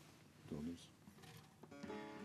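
Mostly quiet, then near the end a bağlama (saz) is plucked and its strings ring on as the instrument starts to play.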